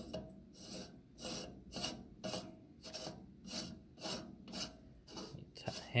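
Stainless-steel threaded fitting being screwed by hand onto a samosa machine's auger housing, the metal threads rasping in short strokes, about two a second, as the hand turns and regrips.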